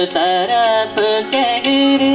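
A boy singing a wavering, ornamented vocal line into a microphone, with harmonium and tabla accompaniment. From about a second in, the notes settle into steadier held tones.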